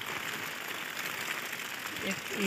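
Steady rain falling, an even, continuous hiss.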